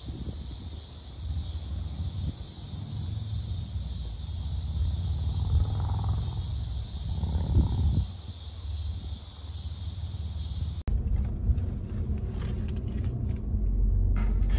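Outdoor ambience of a steady high insect drone over a low, uneven rumble. About eleven seconds in it cuts abruptly to the steady low rumble of a car interior.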